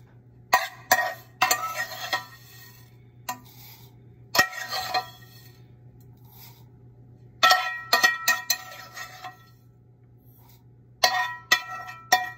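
Toasted sesame seeds being tipped into a mixer-grinder jar: a spoon and pan clink and knock against the jar in several short bursts, each with a brief ring. A faint steady low hum runs underneath.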